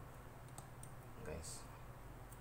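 Quiet small clicks and handling noise from dynamic microphone parts being handled, with a brief louder rustle a little past halfway through.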